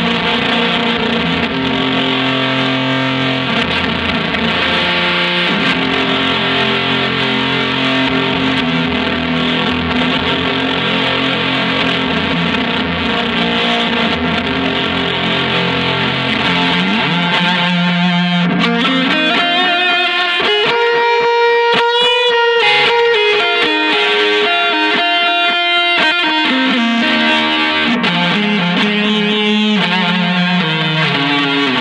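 Electric guitar played through a Chase Bliss Audio / ZVEX Bliss Factory two-germanium-transistor fuzz pedal: thick sustained low notes, turning a little past halfway into rising sweeps and a choppy, stuttering texture, before low notes return near the end.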